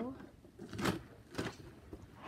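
Two short plastic clacks about half a second apart as a large toy Nerf blaster is handled and moved.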